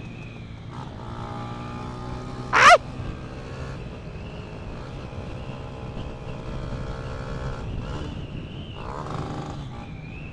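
Motorcycle engine running at a steady pace as the bike is ridden, its tone shifting briefly near the end. A man gives one short loud shout ("Ai!") a couple of seconds in.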